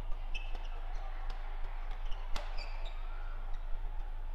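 Badminton rally: rackets striking the shuttlecock in quick exchanges, a series of sharp cracks with the loudest a little past halfway, along with short high squeaks of players' shoes on the court floor.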